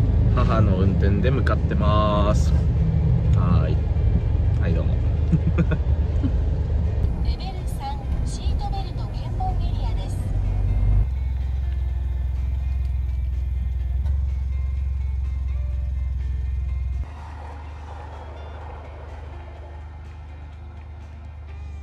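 Steady low rumble of a car driving, heard from inside the cabin, with voices and music over it for the first half. About three-quarters of the way through it gives way to a quieter steady background noise.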